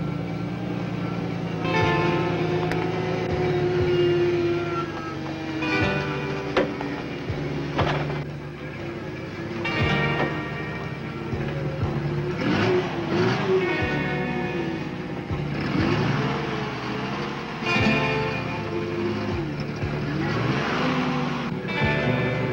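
Instrumental film-score music with a forklift truck's engine running beneath it.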